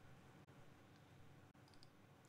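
Near silence: room tone, with a few faint short clicks near the end.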